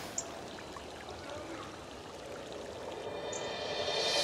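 A faint, steady hiss of background ambience. Over the last second or so, a sustained sound swells up as the score's music begins.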